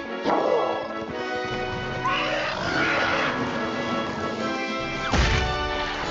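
Background music from the cartoon's soundtrack, held tones running throughout, with a loud crash about five seconds in.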